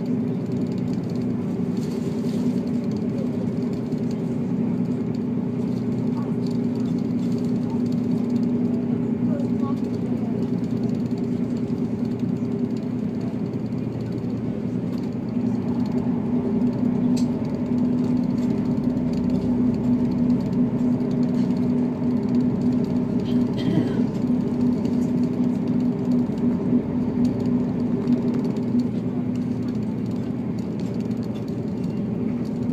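Diesel railcar in motion heard from inside the passenger cabin: a steady engine drone over the low rumble of the wheels on the rails, a little louder in the second half.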